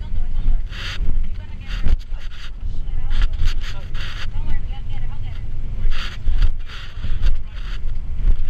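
A boat hull and engines heard from inside the cabin in rough seas: a constant deep rumble, with repeated hissing surges of water rushing and slapping against the hull about once a second.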